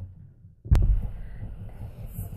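The sound drops almost to nothing for about half a second, then a sharp click, followed by low, muffled thumps of handling noise as a picture book is moved against a wooden table.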